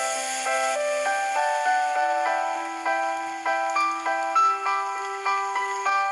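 Background music: a melody of short pitched notes over long held low notes.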